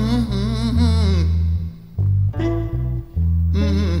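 Slow blues recording: heavy low bass notes with guitar, and a wavering melody line in the first second or so. A hummed 'mm' from the singer comes near the end.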